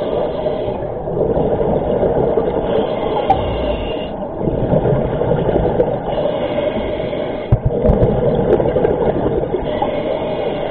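Scuba diver breathing through a regulator, heard underwater: a hiss on each inhale and a bubbling rumble of exhaled air, twice in a slow repeating cycle.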